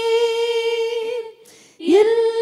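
An elderly woman sings a Tamil worship song unaccompanied into a microphone. She holds one long steady note that breaks off a little past halfway, pauses briefly for breath, and begins the next phrase with an upward slide near the end.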